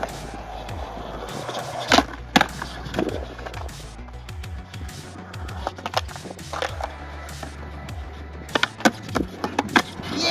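Skateboard wheels rolling on concrete, broken by sharp clacks of the board and trucks hitting the ground and the bowl's coping, with a quick cluster of knocks near the end.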